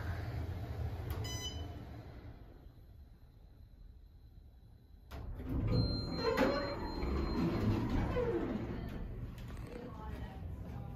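Otis hydraulic elevator coming to a stop: the car's low running rumble fades away, a short chime sounds about a second in, and about five seconds in the doors slide open with a sudden rise in sound.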